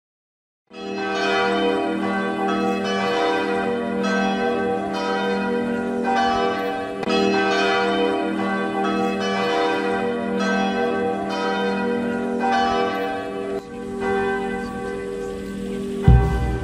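Several church bells ringing together in a full peal, their strikes falling about one to two a second and overlapping into a continuous ringing, starting about a second in.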